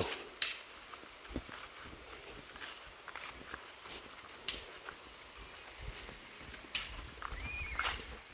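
Footsteps on a rocky dirt trail: faint, irregular crunches and knocks of shoes on soil and stones while walking.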